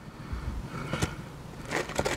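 Quiet handling noises from the open cardboard takeaway box and the food in it: a low bump near the start, faint rustling, and a single sharp click about a second in.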